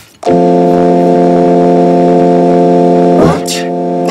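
A steady, flat electronic tone held for about three seconds, thickened into a dense chord of stacked pitches by pitch-shifting effects, breaking off about three seconds in with a brief rising sweep.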